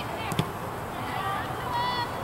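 Players shouting to each other across an open soccer field, short high-pitched calls near the middle and end. One sharp thump about half a second in is the loudest sound.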